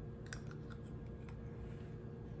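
A few faint short clicks, the sharpest about a third of a second in, with a couple more over the next second: a metal spoon against teeth and the mouth sounds of taking and chewing a bite of oatmeal. A low steady hum runs underneath.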